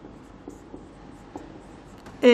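Marker pen writing on a whiteboard: a faint, soft scratching of the tip across the board, with a few small taps as strokes begin.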